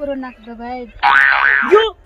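A short spoken phrase, then for about a second a cartoon-style comic sound effect whose pitch rises and falls twice, like a springy boing.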